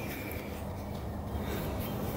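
Quiet background: a steady low hum under faint even noise, with no distinct event.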